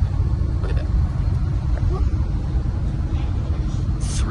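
Steady low rumble of a high-speed train running at about 327 km/h, heard from inside the passenger cabin.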